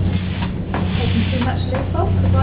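A steady low hum runs throughout, with faint, indistinct voices in the background and a few light knocks.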